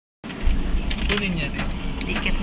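After a moment of dead silence at the start, the steady low rumble of a van driving, heard from inside its cabin, with a person's voice briefly in the background partway through.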